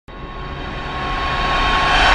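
Intro whoosh sound effect: a noisy, rumbling swell that builds steadily louder, with a thin steady tone running through it.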